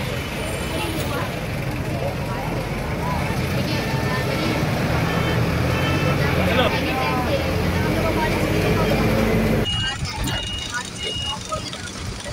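Busy city street traffic at close range: a city bus engine running by, with heavy rumble, traffic noise and crowd voices. About ten seconds in it cuts abruptly to a quieter scene of people talking inside a vehicle.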